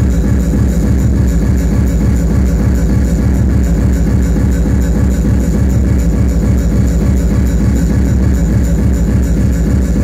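Loud hard electronic dance music from a DJ set playing over a club sound system. It has a heavy bass and a steady, fast kick-drum beat.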